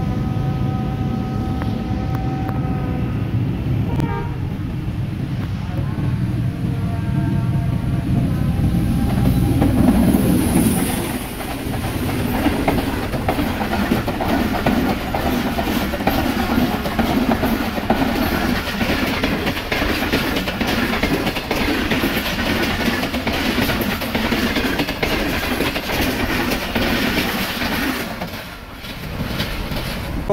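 Pakistan Railways passenger train (Pak Business Express) approaching at speed with its locomotive horn sounding in the first few seconds, then running past close by. The passing brings a loud, steady rumble and wheel clatter for nearly twenty seconds, loudest about ten seconds in as the train draws level.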